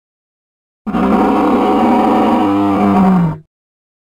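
Dinosaur roar sound effect: one loud, rough, growling roar about two and a half seconds long, dropping in pitch as it ends.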